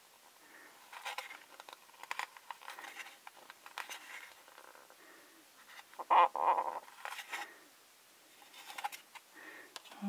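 Fingertips and a fingernail rubbing and pressing a paper sticker flat onto a small plastic toy display counter to work out an air bubble: soft scratches and light taps, with a louder cluster of clicks and rubbing about six seconds in.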